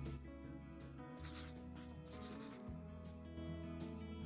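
Soft background music with a steady, sustained accompaniment. Two brief hissing noises come in, a little after one second and again about two seconds in.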